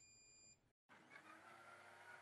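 A short electronic beep from a countertop blender's controls, then, after a brief cut, the blender's motor spinning up and running steadily, heard faintly.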